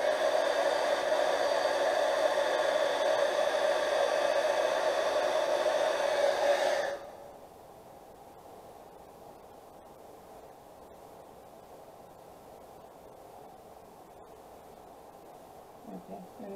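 Handheld embossing heat gun running with a steady fan hum as it heats embossing powder to soften it, then switched off about seven seconds in, leaving only faint room noise.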